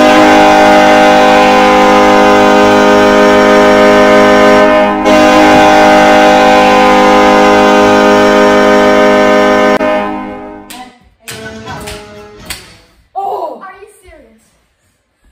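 Hockey goal horn sounding after a goal: one loud, steady blast with a short break about five seconds in, ending about ten seconds in. A few knocks and brief voices follow.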